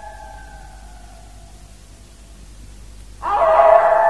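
Drawn-out canine howling: one long howl sliding slightly down and fading away over the first second and a half, then another howl starting loudly about three seconds in.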